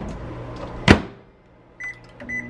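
Microwave oven humming, with one loud clunk just before a second in. Near the end come two short keypad beeps as its buttons are pressed.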